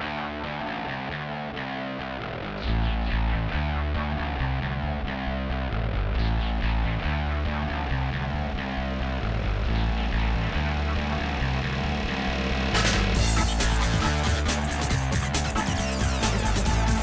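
Driving soundtrack music with guitar. A heavy bass line comes in about three seconds in, and the music gets louder and brighter about thirteen seconds in.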